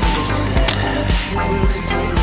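Music track with a steady beat, with a sharp skateboard clack cutting through about two-thirds of a second in.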